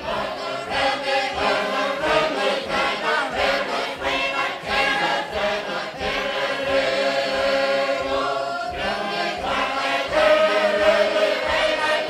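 Background music: a choir singing, with voices holding long notes.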